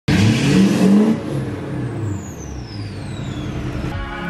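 Duramax 6.6-litre turbo-diesel V8 pickup revved, then settling back toward idle. A high whistle falls steadily in pitch as the turbo spools down.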